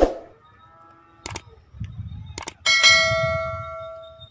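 Subscribe-button animation sound effects. A short swoosh at the start, two pairs of quick mouse clicks about a second apart, then a bright notification bell ding that rings out and fades over the last second or so.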